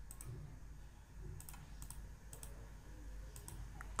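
Several faint computer mouse clicks, some in quick pairs, over a low steady room hum.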